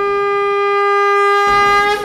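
Conch shell (shankha) blown in one long, steady note with breath noise under it. It swells slightly and breaks off at the end.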